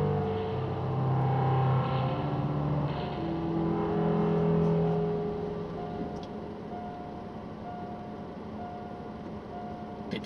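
Background music with electric guitar fades out over the first half, leaving a railway level-crossing warning bell sounding a repeated ringing tone about once a second while the crossing is closed for an approaching train.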